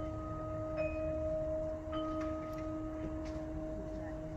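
Quiet passage of wind-ensemble music: a held tone sounds throughout while soft, bell-like mallet-percussion notes are struck about once a second, each ringing briefly.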